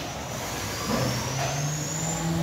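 Articulated robot arm's servo motors whining as the arm moves: a low hum sets in about a second in and rises slightly in pitch, with a faint high whine climbing alongside.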